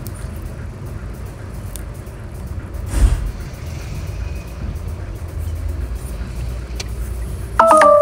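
Inside the cabin of a Mitsubishi Outlander driving slowly: a steady low rumble of road and engine noise, with a bump about three seconds in and a short electronic beep near the end.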